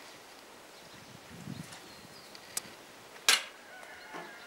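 Quiet outdoor background with a brief low rumble about a second and a half in, a small click, then one sharp, loud click near the end.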